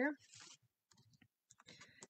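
Faint paper rustling and a few small clicks as card-stock pieces and foam adhesive dimensionals are handled and pressed down.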